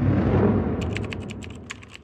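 Intro sound effects: a deep boom that is loudest at the start and fades away, with a quick run of typing-style key clicks, about ten a second, over it from about a second in.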